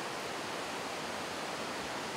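Steady, even rushing outdoor background noise, with no separate crackles or knocks.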